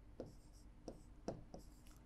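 Faint pen strokes and taps on an interactive touchscreen whiteboard as a word is written out, with about four light ticks as the pen meets the screen.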